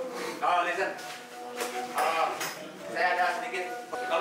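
Indistinct voices of people talking, with a few short clinks around the middle.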